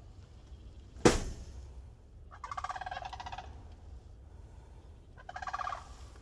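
A farmyard fowl calls twice, each a quick rattling call under a second long, the second near the end. A sharp knock about a second in is the loudest sound.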